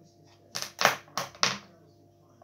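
Four sharp clacks in quick succession, starting about half a second in, like small hard objects knocked together or set down on a counter while rummaging.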